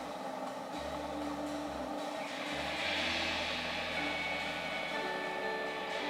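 Live instrumental passage from a small band: upright double bass notes under piano and electric guitar, with the drummer's cymbals swelling in about two seconds in.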